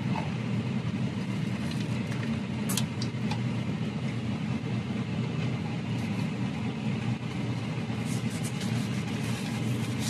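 Steady low hum of a car idling, heard from inside the cabin, with a few brief clicks and rustles from eating a sandwich about three seconds in and near the end.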